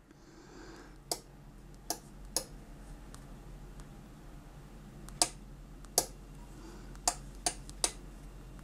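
About eight sharp, irregularly spaced clicks, bunched around the first two seconds and again in the last three, over a faint steady hum. They come while a Gosund smart power strip is being switched from its phone app.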